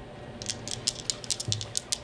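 Small plastic board-game pieces, coins or dice, clicking and rattling together in a quick irregular run of light clicks that starts about half a second in.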